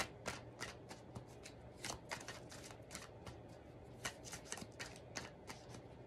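A tarot deck being shuffled by hand: a quick, irregular run of soft card clicks and flicks, with a sharper snap right at the start.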